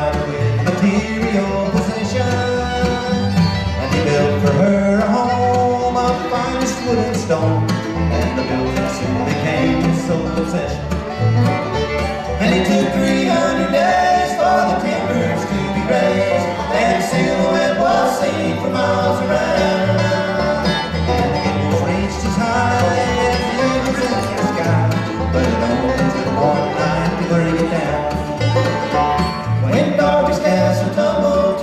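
Live acoustic bluegrass band playing an instrumental break with no singing: banjo, fiddle, mandolin and guitar over a steady upright bass line.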